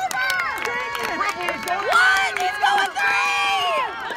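Spectators at a baseball game shouting and cheering, several voices overlapping in long yells that rise and fall in pitch.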